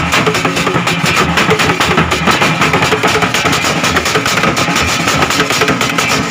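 Live drumming by a small ngoma ensemble: a bass drum and skin-headed hand drums played in a fast, steady, dense rhythm.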